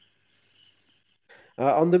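A brief, thin, high-pitched steady tone lasting about half a second, set between stretches of dead silence.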